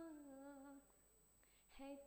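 A young woman singing a Hindi prayer song unaccompanied: she holds the end of a phrase on a note that slides downward and fades out within the first second. After a brief pause she starts the next phrase near the end.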